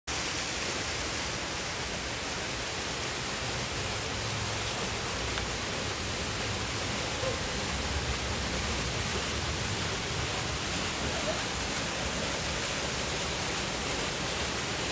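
Steady rushing noise of a concrete fountain's waterfall pouring into a pool, at an even level throughout.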